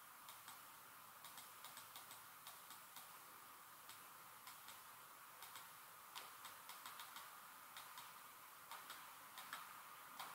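Near silence with faint, irregular ticks of a stylus pen tapping on a screen as words are handwritten in digital ink.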